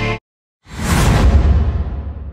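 Background music cuts off just after the start; after a half-second gap, a whoosh sound effect with a deep rumble swells in and slowly fades away.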